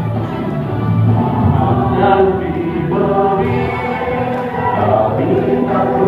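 A group of voices singing together in chorus, holding notes and moving from pitch to pitch.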